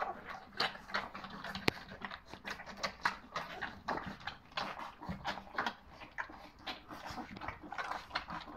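A litter of nearly three-week-old puppies lapping and smacking at their first gruel from a shared metal feeding dish: a dense, irregular run of quick wet smacks and clicks, with one sharper click about a second and a half in.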